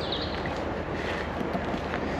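Steady outdoor noise of wind on the microphone, with a brief high chirp just after the start.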